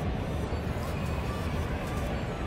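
Ballpark ambience: a steady murmur of crowd chatter in a large stadium, with public-address music playing faintly.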